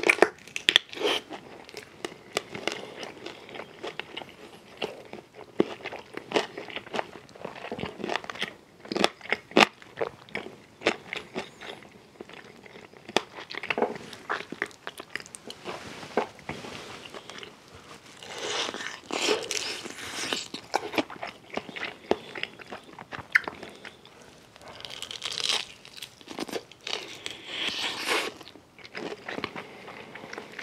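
Crispy fried chicken being bitten and chewed close to the microphone: a steady run of crunches and crackles from the battered skin, thickening into denser spells of crunching about two thirds of the way through and again near the end.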